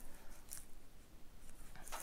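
Faint scraping of a skinning knife lightly cutting the membrane between pelt and skull as a coyote's pelt is pulled down off its head.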